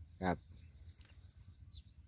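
Crickets chirring steadily in a high, even trill, with a string of four short high chirps about a second in. A man says one short word just after the start.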